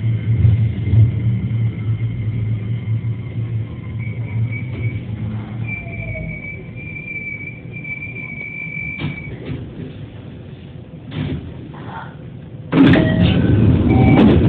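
JR 207 series electric commuter train pulling away from a station, heard from the cab: a steady low hum, then a high motor-inverter whine that climbs slightly as it accelerates. A few sharp wheel clicks over rail joints follow, and a loud clattering noise starts about a second before the end.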